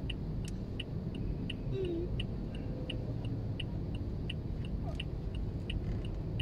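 A car's indicator ticking inside the cabin, an even tick-tock of about three clicks a second alternating louder and softer. Under it is the low rumble of the idling car and the stopped traffic around it.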